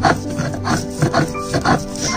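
A stone roller rubbed back and forth on a flat grinding stone (sil batta), grinding fresh coriander into paste: rhythmic rasping strokes, about two or three a second, over background music.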